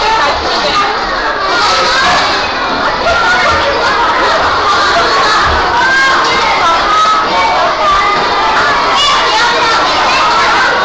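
A crowd of children shouting and chattering all at once, many voices overlapping in a steady, loud babble.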